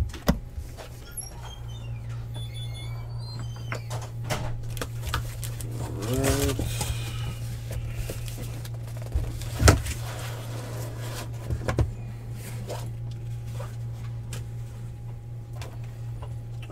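A cardboard shipping case being opened by hand and its sealed trading-card boxes lifted out and stacked: scattered cardboard rustles, scrapes and clicks, with a sharp knock about ten seconds in and more knocks about two seconds later as boxes are set down. A steady low hum runs underneath.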